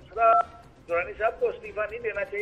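Speech heard over a telephone line, with a thin, narrow sound. A brief steady tone comes in near the start.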